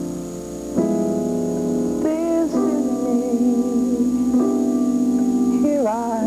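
Held chords on a keyboard, changing about a second in and again past four seconds, with a man singing over them from about two seconds in, his voice wavering with vibrato.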